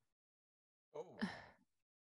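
Near silence, then about a second in a person gives one brief sigh, a breathy exhale with a falling voice.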